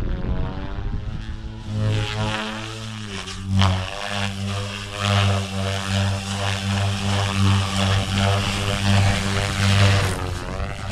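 Goblin RAW 500 electric RC helicopter in 3D flight: the rotor blades and motor hum, wavering in pitch as it manoeuvres. There is a sharp whoosh about three and a half seconds in, then a steady pulsing about twice a second.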